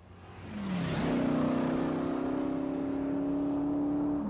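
Dodge Challenger's engine accelerating away. Its note dips briefly, then jumps higher about a second in and holds steady, slowly climbing in pitch.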